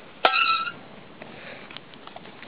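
A metal billy pot set down on a steel wood-burning camp stove: one clank about a quarter-second in with a brief metallic ring, then the fire's low sound with a couple of faint ticks.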